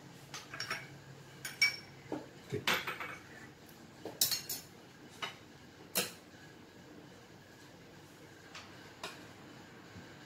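A spoon clinking and knocking against bowls while fruit salad is mixed and served, in irregular light clinks. The clinks come thickly over the first six seconds, and only one or two follow after that.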